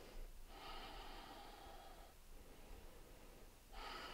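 Faint breathing of a woman: one long, soft exhale lasting about a second and a half, starting about half a second in, with a breath drawn in near the end.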